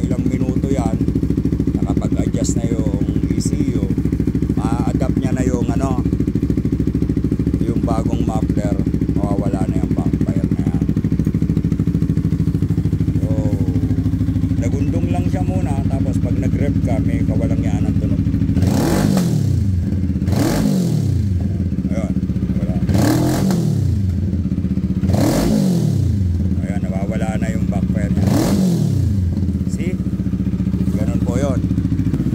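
A Bristol 650 cruiser motorcycle idles steadily through its newly fitted exhaust, with the ECU still adjusting to it. Over the last ten seconds it is revved five times in short blips, each rising and falling in pitch.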